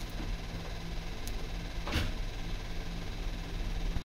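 Handling noise from a roll of kinesiology tape being picked up and turned in the hand, with a faint click and then a soft knock about two seconds in, over a steady low hum.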